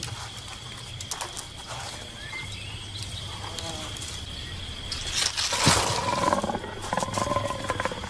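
Leopard growling, loudest about five and a half seconds in, over a steady high tone.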